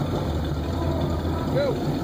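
A vehicle engine idling, a steady low rumble that holds level throughout.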